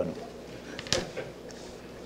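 A microphone being handled, with one sharp click about a second in and faint voices in the room.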